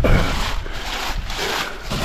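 A foil-faced foam insulation board rubbing and scraping as it is slid across the floor and diamond-plate threshold of a shed, with a short knock at the start.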